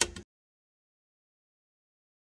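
A brief sharp knock right at the start, then dead digital silence: the sound track cuts out completely.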